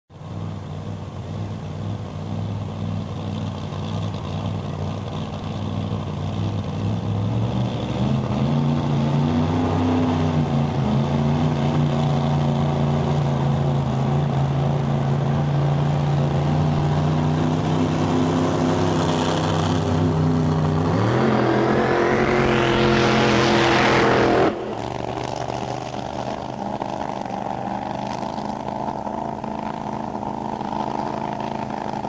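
Alcohol-burning V8 of a top alcohol funny car running: a steady idle that steps up in pitch about seven seconds in and holds there, then a long rev climbing steeply in pitch from about 21 s, the loudest part, which cuts off abruptly at about 24 s. A quieter, steady engine-like noise follows.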